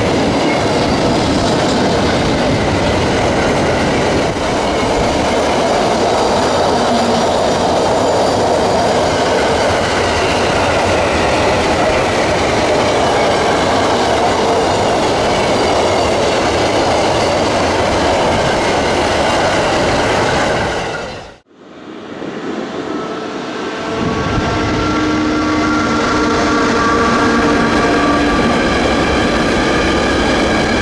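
Freight train of double-deck car-carrier wagons rolling past close at speed: a steady, loud rumble with wheels clicking over rail joints. About two-thirds of the way through the sound fades out. A second freight train of container wagons then fades in, passing with a steady hum over its rolling noise.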